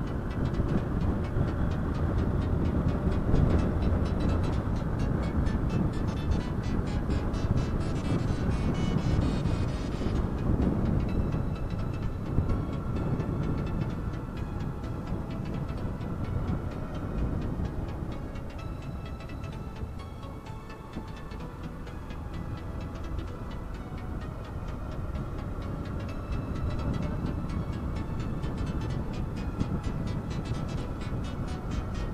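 Wind rushing over the microphone and a motorcycle engine running as the bike rides along, loudest in the first dozen seconds, easing a little in the middle and picking up again near the end.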